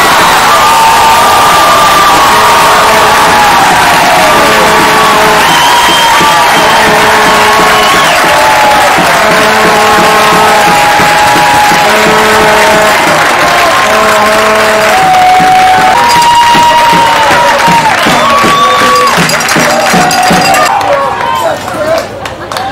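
Crowd of spectators cheering and yelling after a goal, many voices overlapping with long held shouts, dying down near the end.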